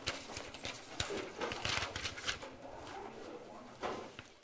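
Rustling with scattered clicks and knocks, the sound of things being handled and packed up at the end of a lecture.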